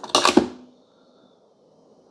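Lid of a Keurig K-Supreme Plus Smart coffee maker pushed shut over a K-cup pod: a quick clatter of plastic clicks and a clunk, with a brief low ring, near the start.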